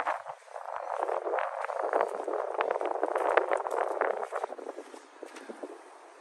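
Footsteps crunching on gritty tarmac: a scatter of small irregular clicks over a soft hiss, dying down about four and a half seconds in.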